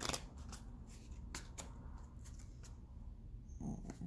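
A tarot deck being shuffled by hand: a quick flurry of card clicks at the start, then scattered single clicks as the cards are worked. A short sound with a thin high tone near the end.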